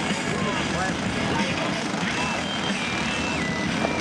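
Racing go-kart engines running on a dirt oval, a steady droning mix of several small engines out on the track, with a thin high whine that steps down in pitch through the second half. Faint voices of people around the track are mixed in.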